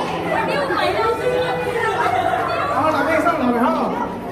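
Overlapping chatter of a group of adults and children talking at once, no one voice standing out.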